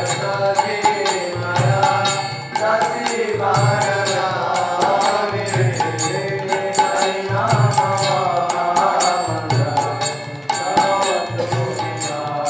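Devotional chanting sung to a steady rhythm of hand-cymbal strikes, with recurring drum beats underneath.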